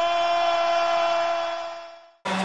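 Intro sting of the highlight video: one long held note that fades out near the end.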